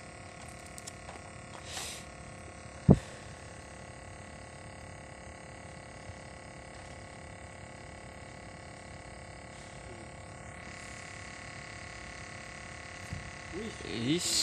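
Steady outdoor hum made of several fixed tones, with a single sharp, loud thump about three seconds in.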